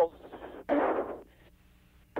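Hiss on the crew's radio link, then a short burst of static about two-thirds of a second in. After that the channel falls quiet except for a faint steady hum.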